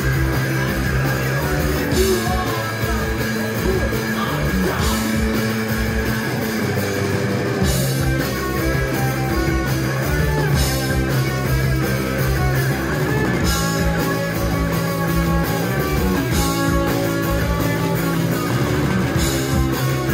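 Live rock band playing an instrumental passage on electric guitar, bass and drums. Cymbal crashes land about every three seconds over the sustained guitar and bass.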